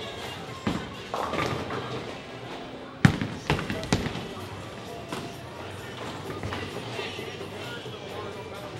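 A bowling ball dropped hard onto the wooden lane about three seconds in: one loud thud, then two smaller bounces as it carries on down the lane. Background music and chatter run underneath.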